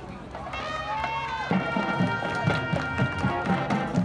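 Marching band playing: a quieter held phrase, then about a second and a half in the full band comes in over a steady drum beat and grows louder.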